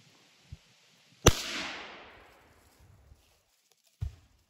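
A single gunshot about a second in, sharp and loud, with its echo trailing off over about a second.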